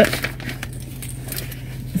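Light rustling and small clicks of a small zippered fabric pouch being zipped shut and pushed into a fabric tote bag, over a steady low hum.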